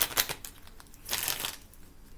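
Tarot cards being shuffled and handled: two short bursts of papery riffling and clicking, one at the start and another about a second in.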